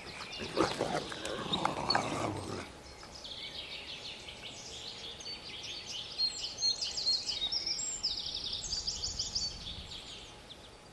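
Grey wolves growling in rough play for the first couple of seconds, then a quieter stretch of faint, high-pitched chirping.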